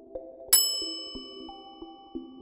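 A single bright chime sound effect struck about half a second in, ringing out and fading over about a second, over soft background music with slow sustained notes.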